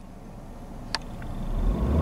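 Nissan Qashqai's engine rising in revs: a deep rumble that grows steadily louder from about halfway through. A single sharp click about a second in.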